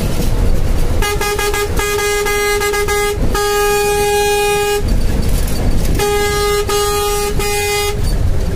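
A vehicle horn honking in a series of blasts on one steady pitch. Two blasts come about a second in, one is held for about a second and a half in the middle, and three shorter blasts follow near the end. Steady road and engine rumble runs underneath.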